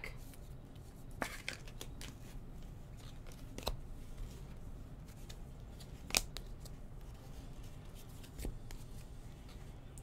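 Faint handling of a stack of baseball trading cards: cards sliding and rubbing against each other, with a few short sharp clicks about one, four and six seconds in.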